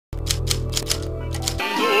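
A low steady hum with a rapid run of sharp clicks, about six a second, that cuts off about one and a half seconds in, when orchestral music with a singer's wide vibrato begins.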